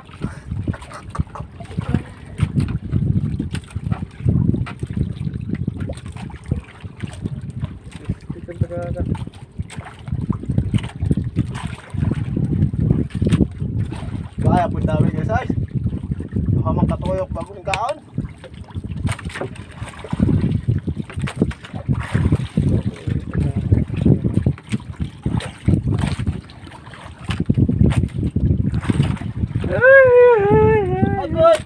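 Wind rumbling on the microphone in uneven gusts aboard a wooden outrigger fishing boat, with a few faint words now and then.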